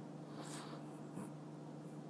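Low steady hum in the recording's background, with a faint short noise about half a second in and a small tick a little after one second.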